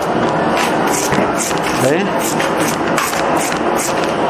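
Kitchen knife slicing kernels off corn cobs into a metal tub, a quick scraping cut repeated about two or three times a second.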